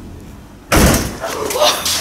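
A sudden loud slam about two-thirds of a second in, followed by about a second more of noisy commotion with a couple of further knocks; it is loud enough to make people jump.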